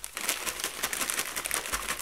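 Plastic snack bags crinkling as a hand rummages in the bag for nuts: a dense, continuous run of small crackles.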